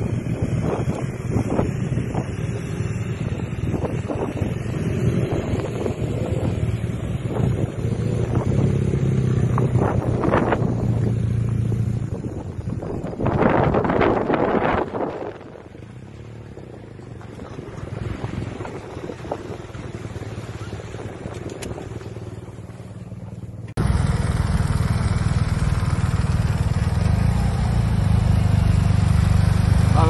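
Several adventure motorcycles riding past on a gravel track, their engines running, with wind buffeting the microphone. Near the end the sound cuts abruptly to a single motorcycle engine running steadily close up.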